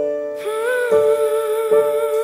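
Song intro: piano chords struck about every second, and a woman's voice comes in about half a second in, holding one long note with a slight vibrato over them.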